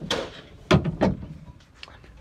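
Plastic wiring-harness connector being worked loose and unplugged from a truck's power-window motor: a few sharp plastic clicks, the loudest about three-quarters of a second and a second in, followed by light ticks.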